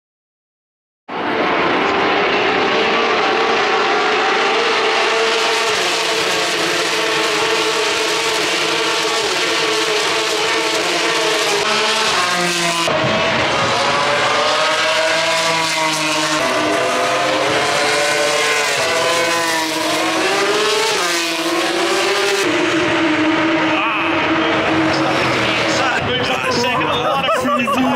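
Formula 3 race cars' V6 engines running at high revs along the circuit, several cars one after another, their engine notes rising and falling as each one passes. The sound starts abruptly about a second in and stays loud throughout.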